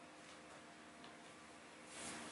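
Near silence: room tone with a faint steady hum and one faint click about a second in.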